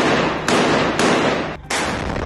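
Gunfire and blasts in urban combat: four sharp reports about half a second apart, each dying away in an echo.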